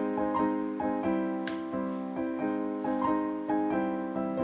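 Gentle background piano music, notes changing about every half second, with a brief faint click about a second and a half in.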